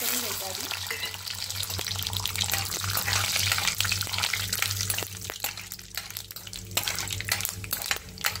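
Peanuts and cumin seeds frying in hot oil in a stainless steel kadhai: a steady sizzle full of small crackles and pops, while a metal spoon stirs them and scrapes against the pan. This is the tempering stage of the dish. The sizzle eases a little after about five seconds.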